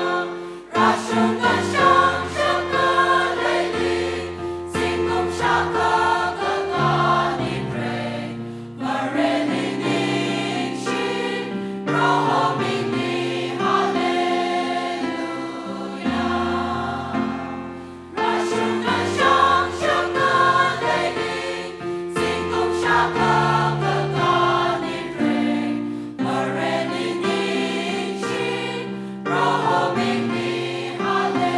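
A mixed choir of women's and men's voices singing a hymn together, in long sustained phrases with brief breaks between them.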